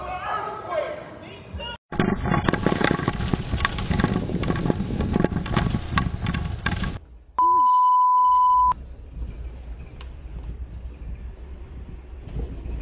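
Earthquake shaking picked up by a security camera's microphone: a low rumble with many rattling knocks for about five seconds. It is followed by a steady high beep of just over a second, then fainter low rumbling.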